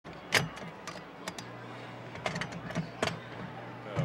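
Clicks and clacks of a thrill ride's restraints, the metal lap bar and harness buckles, being fastened by hand, with the sharpest click about a third of a second in. A low steady hum comes in about a second and a half in.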